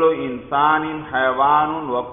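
A man's voice reciting in a drawn-out, sing-song way, with long held syllables.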